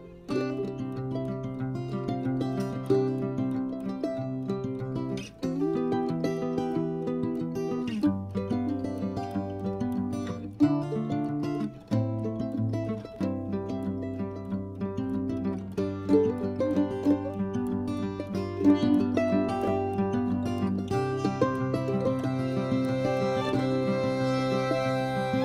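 Instrumental background music led by plucked strings, the notes and chords changing every second or two.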